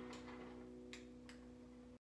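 The last chord of an acoustic guitar rings out faintly and fades away. Three small clicks come at the start, about a second in and a little after.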